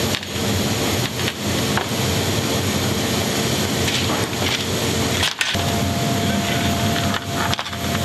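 Steel cargo tie-down chain being handled and fitted to a chain tensioner on the aircraft's metal floor, with scattered clinks. Under it runs the steady, loud noise of the C-17 cargo hold, whose faint hum shifts pitch about five seconds in.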